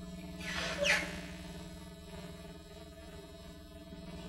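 Pause with no speech: a steady low hum and faint hiss in the background of an old lapel-mic recording, with a brief soft rush of noise about half a second in.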